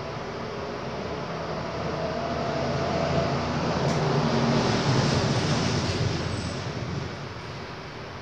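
A passing vehicle: a steady noise with a low hum that swells to its loudest about five seconds in and then fades away.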